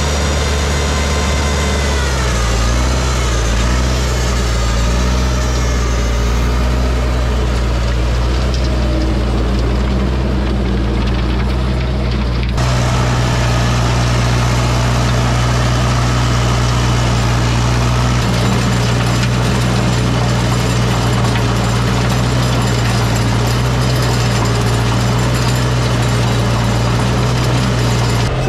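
Farmall 504 tractor engine running steadily under load while driving a PTO rototiller through the soil. The sound changes abruptly about halfway through.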